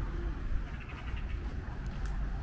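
Low, steady street rumble of road traffic, with a brief run of faint high chirps about halfway through.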